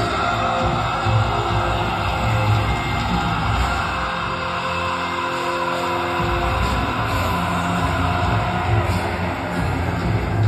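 Power metal band playing live through a PA, heard from the audience: distorted guitars, bass and drums. Near the middle the bass and drums drop out for about two seconds, then the full band comes back in.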